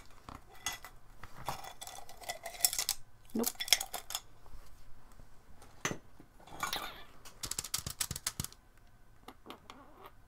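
Small hard objects clinking and rattling against each other in a container as art supplies are rummaged through, in several bursts of clatter, the longest near the end.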